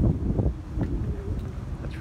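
Wind buffeting the microphone in low, uneven rumbles, strongest in the first half second.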